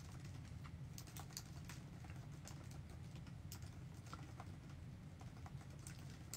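Faint, irregular light clicks and taps, several a second, over a steady low room hum.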